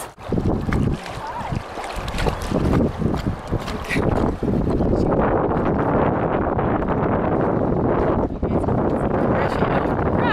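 Wind buffeting the microphone over the rush of small river rapids. The noise grows steadier and fuller about four or five seconds in.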